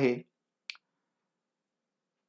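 A single short, sharp click in otherwise dead silence, just after a spoken word trails off.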